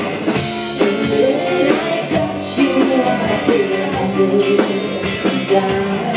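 Live rock band playing: a woman singing over electric guitar, electric bass and a drum kit with a steady beat.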